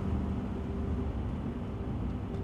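Low, steady rumble of a car in motion, heard from inside the cabin, as a held music chord fades out underneath.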